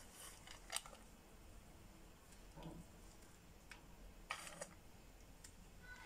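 Near silence: room tone with a few faint, light clicks scattered through it.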